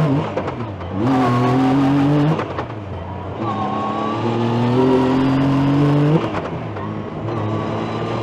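Yamaha YXZ1000R sport UTV's 1000 cc three-cylinder engine, heard from inside the cab under hard acceleration. It revs up through the gears in two long pulls, and the pitch drops back at the sequential-gearbox shifts about two and a half and six seconds in, then climbs again.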